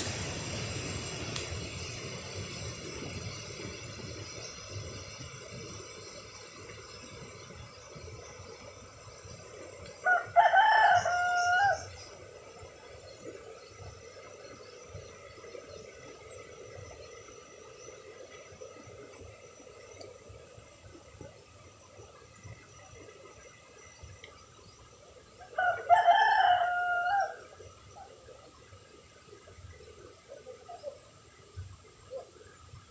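A rooster crowing twice, about fifteen seconds apart, each crow lasting a second or two, over a steady faint hiss.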